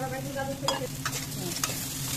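Raw shrimp sizzling as they fry in hot oil and spices in a metal pan, while a metal spatula stirs and scrapes them against the pan. Its edge clinks sharply on the metal a few times.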